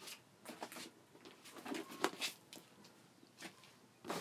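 Faint rustling with scattered light taps and knocks, as bags and the phone are handled.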